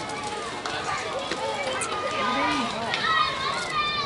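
Indistinct voices chattering and calling out, several people at once, with no one voice clear.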